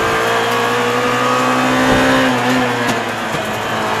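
Rally car engine heard from inside the cockpit, holding a steady high note under load that climbs slightly, then drops away about three seconds in.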